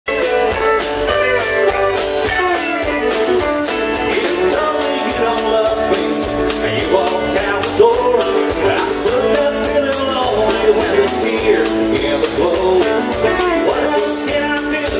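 A live country-western band playing loudly through a PA: acoustic and electric guitars over drums, with a man singing.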